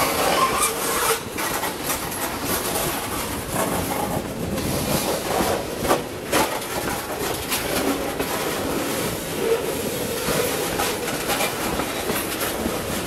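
Freight train tank cars rolling past close by: steel wheels rumbling and clattering along the rails, with a few sharp clicks as wheels cross rail joints.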